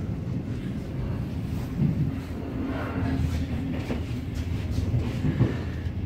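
Steady low rumble of a moving passenger train, heard from inside the carriage.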